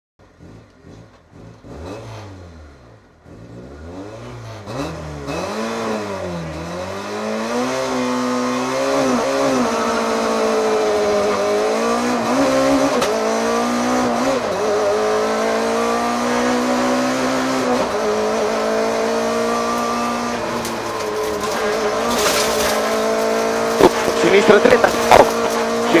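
Rally car engine heard from inside the cabin. It is revved up and down several times while still quiet at first, then pulls away hard. It accelerates up through the gears, the revs climbing and then dropping at each shift, about four times. The co-driver's pace-note calls start just before the end.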